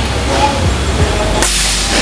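Predator V-Ground 2 PCP air rifle, fitted with an upgraded plenum and regulator, firing one shot about one and a half seconds in: a sudden sharp report that trails off in a brief hiss.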